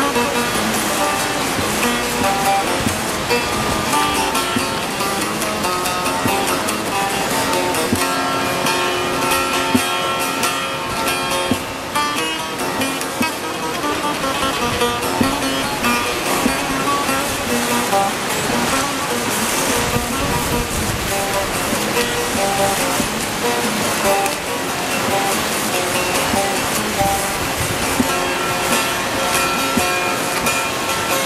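Bağlama (long-necked Turkish saz) played solo: a plucked, strummed folk melody with no singing.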